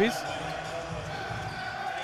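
Basketball being dribbled on a hardwood court, over a steady faint background hum.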